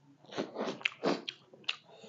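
Close-miked chewing of fried silkworm pupae: a run of short crunching, smacking bursts with a few sharp clicks, for about a second from shortly into the clip.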